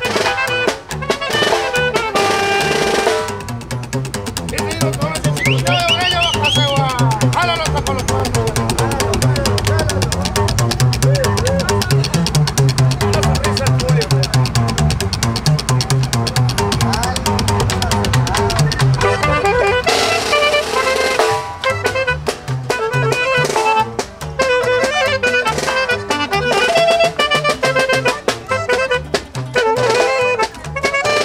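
Norteño-style band playing live: a slapped upright bass (tololoche) under guitar and a snare drum keeping a fast beat, with a man singing through the middle part.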